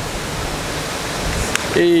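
Steady rushing noise with no clear source, with a faint click about one and a half seconds in.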